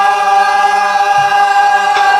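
A woman singing a Korean Namdo folk song in the full-throated southern style, holding one long steady note.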